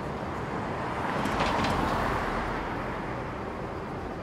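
A car passing along a street: its tyre and road noise swells to a peak about two seconds in, then fades away.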